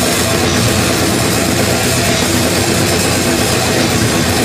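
Live heavy metal band playing loud and dense, with a drum kit struck hard and fast under distorted guitar.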